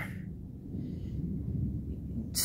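Low, steady background rumble during a pause in speech, with a faint soft hiss about a second in.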